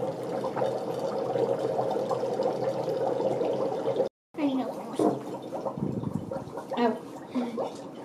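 Dry ice bubbling in a bowl of warm soapy water, a steady churning of gas through the water that cuts out briefly a little after four seconds in, then comes back less even.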